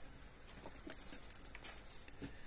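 A few faint, scattered clicks and taps of a hand handling the metal tool rest and its lever on a small bead-turning lathe.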